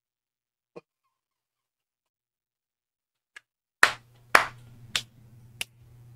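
A man clapping his hands: four loud claps a little over half a second apart, slowing and getting fainter, after a faint click about a second in.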